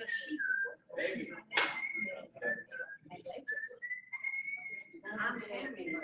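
A person whistling a tune in held notes that step up and down in pitch, with one longer note slightly rising about four seconds in, over people talking.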